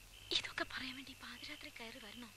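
A voice speaking quietly in a low whisper.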